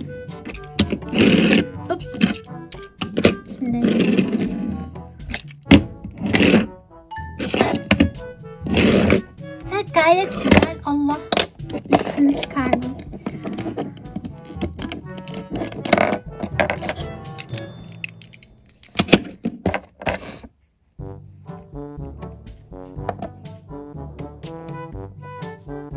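Background music, with clicks and knocks of small plastic toy parts being handled and set down on a tabletop. A short laugh near the start.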